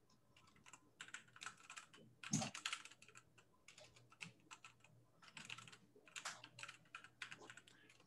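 Faint computer keyboard typing: quick, irregular key clicks, with a slightly louder flurry a little over two seconds in.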